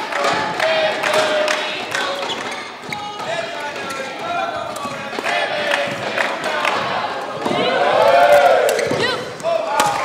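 Badminton rally: rackets strike the shuttlecock back and forth in short sharp hits, over players' footwork on the court and crowd voices. The sound swells near the end.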